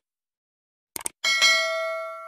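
Sound effect from a subscribe-button animation: a quick double mouse click about a second in, then a notification bell ding that rings on and slowly fades.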